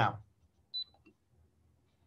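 A single short, high electronic beep about three-quarters of a second in, as a countdown timer is started, then faint room tone.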